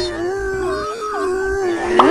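A cat's long, drawn-out meow, one wailing cry held at a nearly steady pitch with slight wavers.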